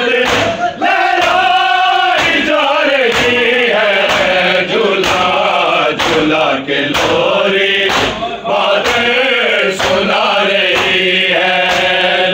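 A group of men chanting an Urdu noha (mourning lament) in unison, kept in time by rhythmic chest-beating (matam): sharp hand-on-chest strikes about three every two seconds under the singing.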